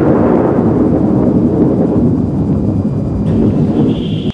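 A loud, deep boom-and-rumble sound effect, edited in over a darkened frame: it is struck just before and rumbles on, its upper part slowly fading while the deep rumble holds.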